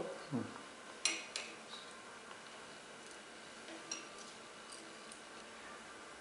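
Metal forceps clinking against a porcelain mortar: two sharp clicks about a second in, then a few faint ticks, over faint steady background noise.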